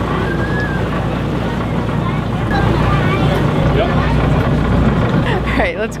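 A fishing cutter's engine running with a steady, low drone.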